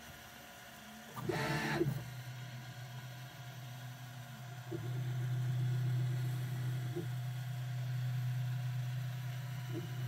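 Prusa Mini 3D printer's stepper motors running as it prints. A brief, louder whine of a fast move comes about a second in, then a steady hum that grows louder about five seconds in.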